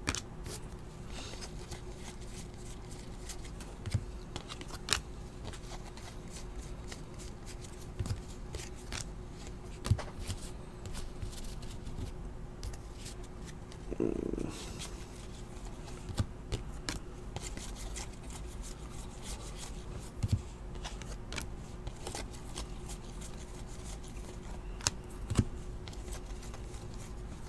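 A stack of 2017-18 Panini NBA Hoops trading cards being flipped through by hand: card stock sliding and snapping against card in irregular soft clicks, over a steady low hum.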